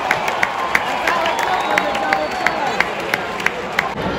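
Baseball stadium crowd clapping and cheering after the fielders make a play, with sharp hand claps close by several times a second over the general crowd noise.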